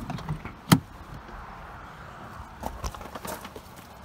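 Handling and movement noise at a truck door: one sharp click about three-quarters of a second in, then faint rustling and a few small clicks near the end.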